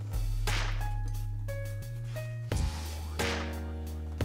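Background music: a deep held bass with a few high held notes over it, and three sharp hits spread through it.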